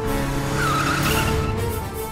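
Motorcycle pulling up and braking to a stop, with a brief tyre squeal around the middle, over background music.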